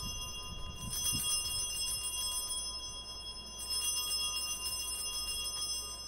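Altar bells (Sanctus bells) rung at the elevation of the consecrated host, their high ringing tones sustained and struck afresh about a second in and again near four seconds.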